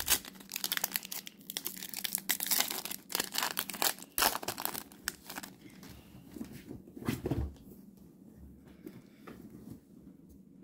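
Baseball card pack wrapper crinkling and tearing as it is opened, dense for the first four seconds or so, then a few scattered rustles of handling and a quieter stretch near the end.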